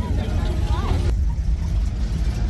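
Low, steady rumble of a lowrider convertible's engine as the car rolls off slowly, with faint voices around it.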